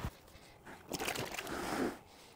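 Faint rubbing hiss of a wet sponge scrubbing a car's plastic lower door trim, starting about half a second in.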